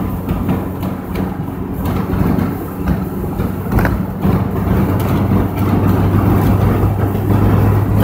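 Inside a car's cabin while driving at speed with the windows partly open: a steady, low engine hum under road and wind noise.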